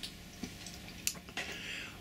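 Quiet room tone in a pause between spoken sentences, with a few faint clicks and a soft breath shortly before the voice resumes.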